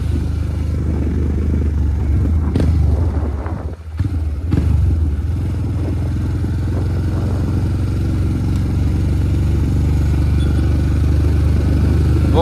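Motorcycle engine running steadily while under way, a continuous low rumble that dips briefly about four seconds in, as if the throttle is eased off for a moment.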